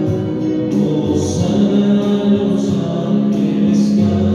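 A choir singing a church hymn in long, held notes.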